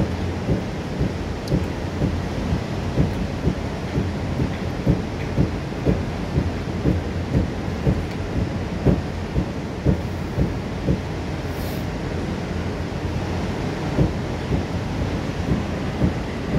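Waterfall plunging onto rocks into a churning river: a steady, loud, low rushing rumble of falling water with irregular low pulses a couple of times a second.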